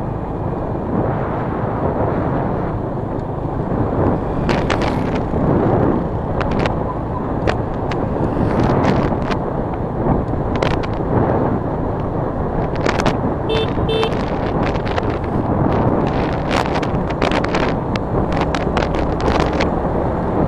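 Wind buffeting the microphone of a camera on a moving motorbike, over the steady run of the bike's engine and tyres on the road, with frequent crackles throughout. Two short beeps sound close together about two thirds of the way through.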